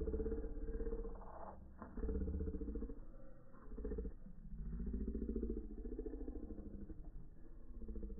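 Slow-motion audio pitched far down: low, drawn-out tones that bend slowly up and down, with a few dull knocks in the first half.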